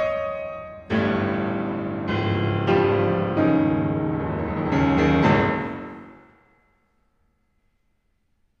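Grand piano played solo: a series of loud struck chords, roughly one a second. The last chord rings out and dies away to silence within about a second and a half.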